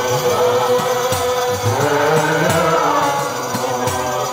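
A group of male voices chanting an Islamic devotional song in unison through microphones and a PA, with a few sharp percussive strokes.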